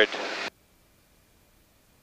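The tail of a spoken vertical-speed callout over the cockpit intercom, followed by a brief hiss that cuts off suddenly about half a second in, then near silence.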